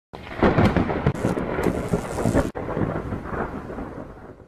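Rumbling thunder, loud at first, breaking off suddenly about two and a half seconds in, then a second rumble that dies away.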